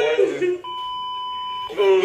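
A steady electronic beep, one even tone held for about a second, that cuts in and out sharply between bits of speech.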